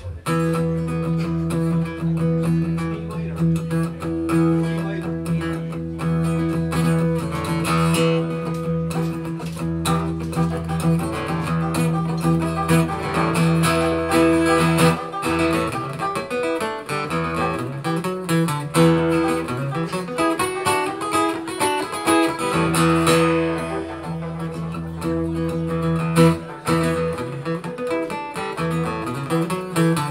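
Guitar playing the instrumental introduction to a folk song, with held notes and a steady run of changing notes and no singing yet.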